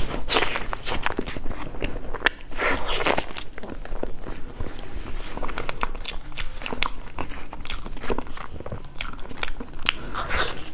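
Close-miked eating sounds: a soft cream-filled dessert being bitten and chewed, with many wet mouth clicks and smacks and a few longer sucking smears.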